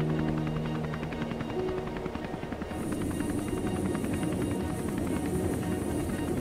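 Helicopter running on the ground, its rotor beating rapidly, with a high turbine whine joining in about halfway through; music plays underneath.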